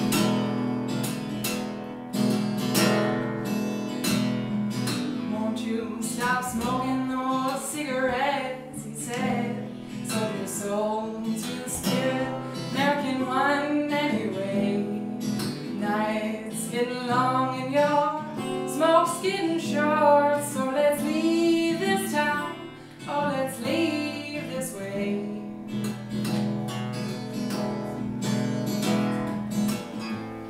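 A woman singing to her own acoustic guitar. The guitar plays alone at first, and her voice comes in about six seconds in and carries on over the guitar, with a short break in the singing about three quarters of the way through.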